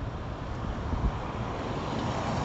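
A Nissan sedan approaching along the road: a steady tyre-and-engine rush that slowly grows louder as it nears.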